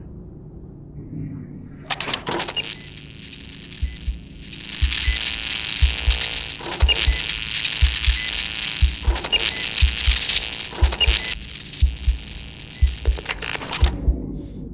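Sci-fi film sound design for a body scan: a steady high electronic hiss with a deep pulse about once a second under it. Sharp clicks cut in every few seconds.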